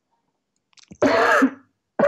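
A man coughs once, a harsh burst about a second in that lasts about half a second.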